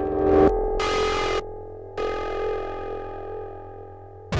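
Synthesizer chords in abrupt, chopped sections: a sustained chord cuts off suddenly about half a second in, short choppy bursts follow, and a new chord sounds about two seconds in and slowly fades away.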